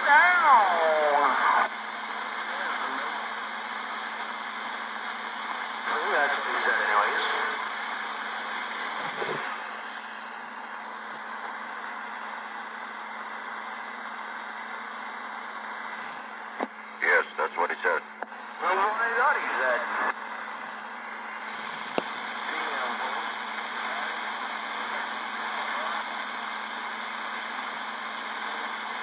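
CB radio receiver putting out steady static hiss, with weak, garbled voices of distant stations fading in and out a few times. About two-thirds of the way through, a choppy, broken-up transmission cuts in before a voice comes through more plainly.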